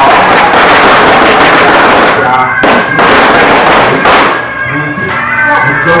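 Firecrackers crackling densely, then a few separate sharp bangs about the middle before thinning out near the end, over music with a pitched melody.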